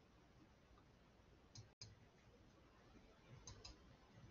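Near silence with a few faint computer mouse clicks: a pair about a second and a half in and another pair near the end.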